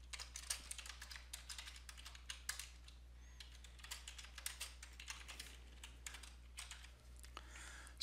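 Faint computer keyboard typing: a quick, uneven run of key clicks, thinning out near the end.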